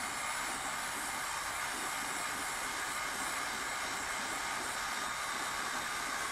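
Electric heat gun running steadily, its fan blowing an even rush of hot air onto a plastic lid to soften it.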